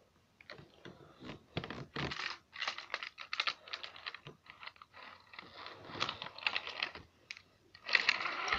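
Irregular light clicks and taps of plastic toy train pieces being handled, busiest about two to three seconds in and again near six seconds.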